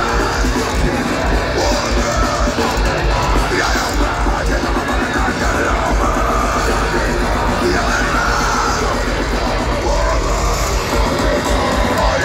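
Heavy metal band playing live at full volume through an arena PA, with rapid kick drum and shouted vocals, heard loud and dense from within the crowd.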